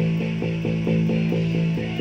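Electric bass guitar repeating one note in a steady driving pulse, about four to five notes a second, played along with a rock band recording.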